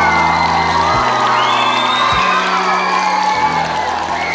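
A live rock band with electric guitars plays the song's closing bars, low notes held and changing about every second. An audience cheers and whoops over the music.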